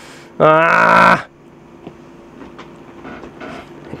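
A man's long, wavering groan of dismay, about a second long near the start. After it, the low steady hum of a room air conditioner.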